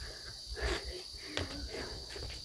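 Steady high-pitched drone of insects in the background, with a faint knock about a second and a half in.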